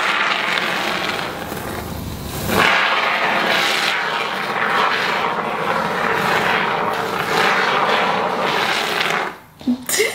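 Aerosol can of expanding foam spraying through its straw nozzle onto a mirror frame: a steady hiss that breaks off briefly about two and a half seconds in, then runs again for several seconds and stops shortly before the end.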